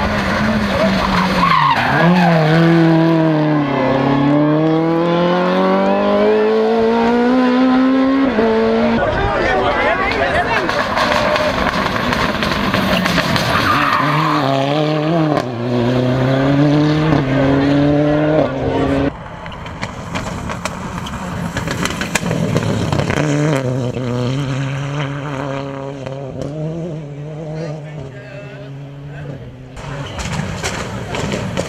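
Toyota rally cars' engines revving hard on a hill-climb run, the note climbing and dropping again and again as they change gear. About two-thirds of the way through the sound cuts to a quieter, steadier engine note.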